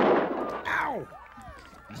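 A sudden loud bang, followed over the next second by several whistle-like tones sliding down in pitch.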